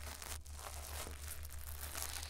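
A wet spoolie brush scratching and rubbing inside the silicone ear of a 3Dio binaural microphone, heard close-up as continuous crackly, wet scratching over a low steady hum.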